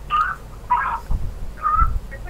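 A caller's voice coming through a telephone line, thin and faint, in three short snatches of words, with a couple of low thumps about halfway through and near the end.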